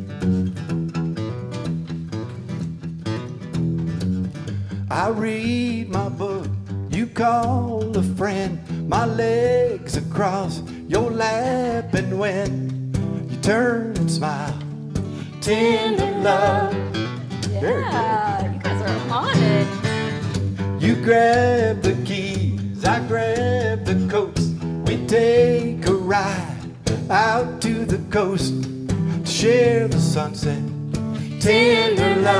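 Acoustic guitar strumming with singing joining in about five seconds in: a live country-style song.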